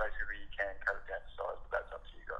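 A man's voice talking through a phone's speaker, thin and telephone-like.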